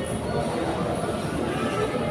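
Indistinct background chatter and clatter of a busy dining hall, a steady murmur of many voices with no single sound standing out.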